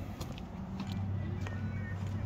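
Music playing quietly from the trike's radio, over a low steady hum.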